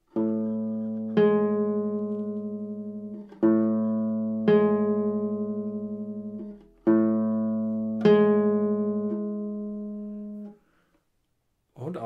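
Classical guitar playing an upward seventh, A then the G above, three times: each time the low note is plucked, the high note is plucked about a second later, and both ring on together and fade out.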